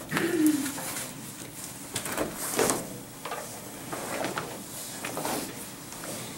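Classroom room sound: a brief low murmured voice near the start, with scattered rustles and light knocks of people moving at their desks.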